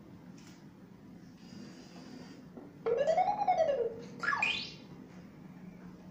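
Electronic sound effect played from the tablet running a Lego WeDo 2.0 program: a tone that rises and then falls in pitch for about a second, followed by a quick, steep upward sweep.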